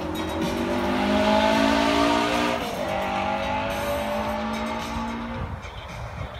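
A car engine accelerating past, its pitch rising, dropping at a gear change about two and a half seconds in, then rising again before it fades near the end.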